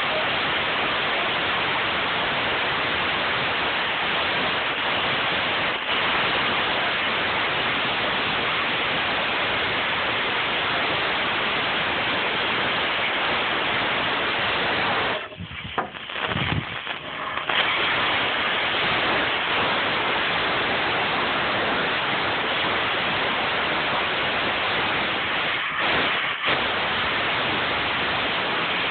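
Propane cutting torch flame hissing steadily while cutting through a rusted steel bumper rail. The hiss breaks off for a couple of seconds about halfway through, then again briefly near the end.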